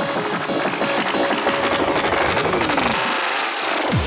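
Dance music playing in a DJ set. About three seconds in the bass drops out and a rising sweep climbs to a high held tone near the end.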